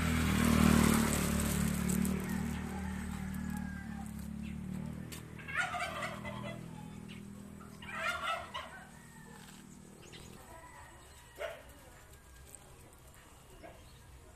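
A turkey gobbling twice, short warbling calls about five and eight seconds in, over a low droning hum that fades away by about ten seconds in.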